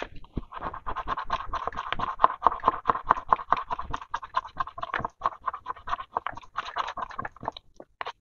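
Scratch-off coating on a paper savings-challenge card being scratched away with quick, repeated strokes, several a second. The scratching stops shortly before the end.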